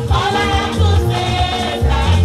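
Gospel praise music: women singing into microphones through a loud sound system, over a band with a heavy, pulsing bass.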